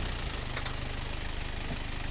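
A vehicle's engine running steadily at low revs, an even low pulsing as the vehicle creeps along a dirt track.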